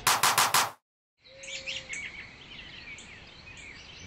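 The last few loud hits of an intro music track, then a short silence, then birds chirping against faint outdoor background noise.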